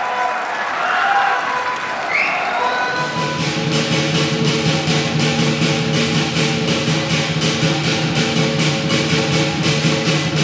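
Lion dance percussion of drum, cymbals and gong. From about three seconds in it settles into a steady beat of about three strokes a second over a held ringing tone.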